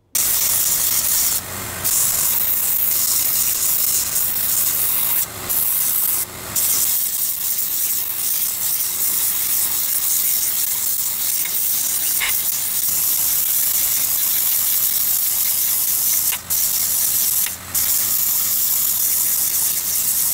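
Small bench belt sander running as old palette knives, their wooden handles and steel blades, are pressed against the belt: a loud steady hiss broken by a few brief dips where the work comes off the belt.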